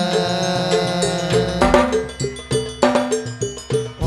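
Hadrah ensemble in an instrumental passage with no singing: frame drums and a keyboard melody, which about halfway through gives way to a series of sharp, accented drum strikes with short gaps between them.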